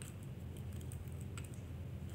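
Light, irregular clicking of plastic beads knocking together as a bead strand is handled and a bead is threaded onto a cord, over a steady low hum.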